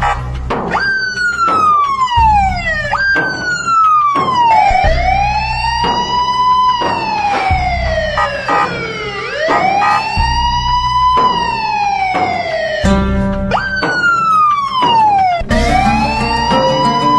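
Ambulance siren heard from inside the cab, sweeping in pitch: first quick falling sweeps, then slow rise-and-fall wails a few seconds each, with a brief fast pulsing tone near the end before the sweeps resume. A steady low vehicle rumble runs underneath.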